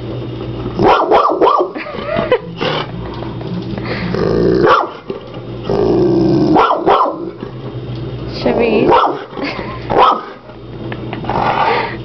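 French mastiff (Dogue de Bordeaux) growling and barking at a hermit crab in an aquarium, in repeated outbursts every second or two.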